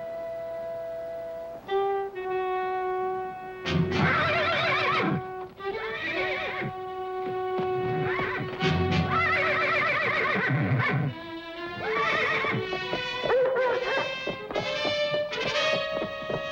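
A horse whinnying several times, loud wavering calls that rise and fall, over a dramatic orchestral score with long held notes.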